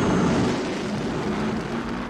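The Batmobile's engine running loud and steady as the car drives by, a film sound effect.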